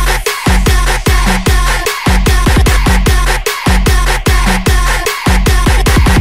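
Electronic dance music with a heavy kick drum and deep bass pulsing about twice a second. The full beat and bass come in at the start, after a bass-less build-up.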